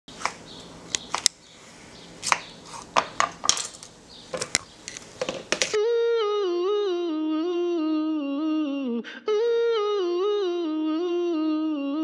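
A spoon clicking and knocking against a plastic bowl of cut fruit, a string of sharp taps. About six seconds in, a hummed a cappella vocal line starts, a melody stepping down in pitch that breaks off briefly and repeats.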